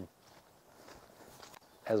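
Faint footsteps of a person walking across leaf-strewn dirt ground.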